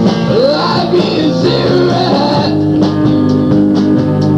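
A rock band playing live, guitars to the fore over a drum kit. Bending guitar notes come early, and drum and cymbal hits grow denser in the second half.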